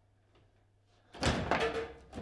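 Foosball table play: after a quiet first second, a loud burst of sharp knocks and clatter as the ball is struck by the rod men and rattles around the table.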